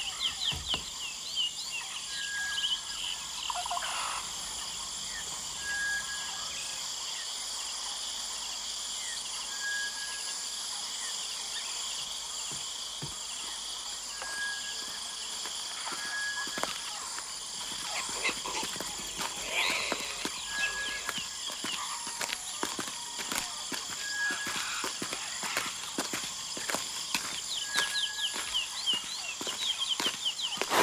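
Steady chorus of insects with a bird repeating a short, even whistled note every few seconds, and quick twittering chirps near the start and end.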